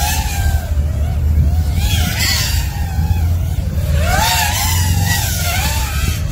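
Racing quadcopter's four DYS Sun-Fun 2306 1750kV brushless motors on a 6S pack whining in flight, the pitch rising and falling again and again with throttle. A steady low rumble runs underneath.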